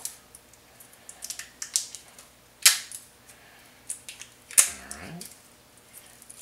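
Foil wrapping being peeled and torn off a wine bottle's neck by hand: scattered crinkles and small clicks, with two sharp cracks, one a little under halfway through and one about three quarters of the way in.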